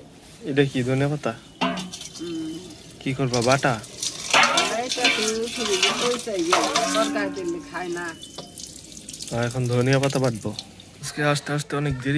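Water running from a tap and splashing over leafy greens as they are rinsed in a plastic basket, with a voice talking over it.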